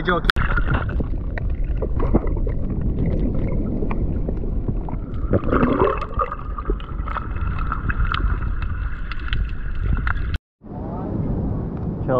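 Muffled underwater sound from a camera held below the surface among feeding fish: water sloshing and bubbling over a dense, steady rumble.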